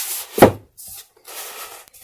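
A book being moved on a wooden bookshelf: one loud bump against the shelf and the neighbouring books about half a second in, then two softer rubbing slides.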